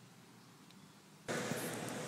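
Near silence, then about a second and a quarter in a steady rushing noise cuts in abruptly and runs on at a much higher level.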